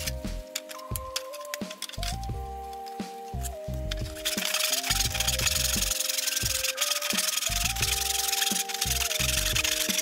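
Hand saw cutting through wooden baseboard in a plastic miter box, with rapid back-and-forth strokes that grow steady and stronger about four seconds in. Background music with sustained chords plays over it.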